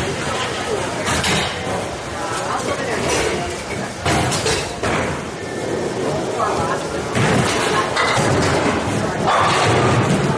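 Bowling alley din: background voices and several sudden thuds and crashes, balls and pins striking on nearby lanes.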